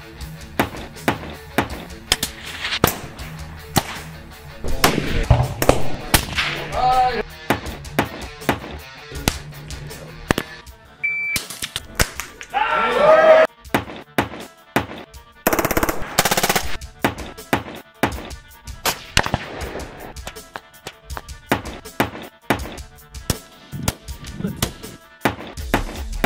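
Background guitar music with many sharp rifle shots cut through it, coming several a second at times.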